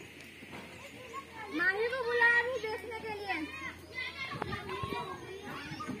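Children's voices at play: a child calls out in one long, high-pitched, wavering call, followed by more children's chatter.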